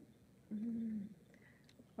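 A woman's short hum, a single held 'mmm' at one steady pitch, starting about half a second in and lasting just over half a second.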